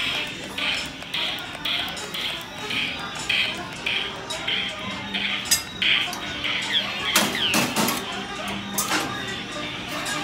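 The dark ride's show soundtrack: music and recorded animatronic voices, with a rhythmic clinking about twice a second through the first six seconds. Several sharp knocks follow near the end.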